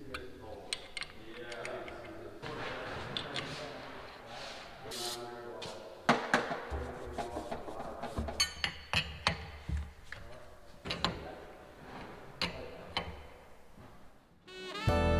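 Irregular metallic clinks and knocks of hand tools and hydraulic hose fittings being fitted to a steel hydraulic cylinder on a corn planter.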